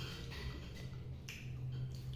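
Light, irregular clicks of a metal fork against a plastic plate as noodles are picked at, over a steady low hum.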